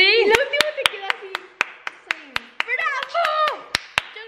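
Hand clapping in a steady rhythm, about four claps a second, mixed with girls' excited voices.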